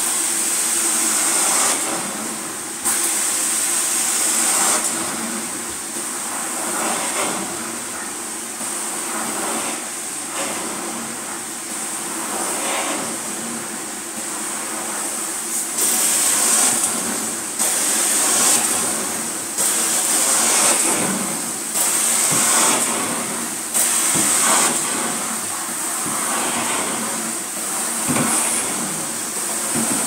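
Carpet-extraction cleaning wand on a vacuum hose, drawn in strokes across wet carpet: a steady rushing hiss of suction that swells and drops with each stroke, every second or two.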